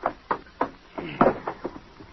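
Radio-drama sound effects of a man being struck down: a string of sharp knocks and thuds, the loudest a little after a second in.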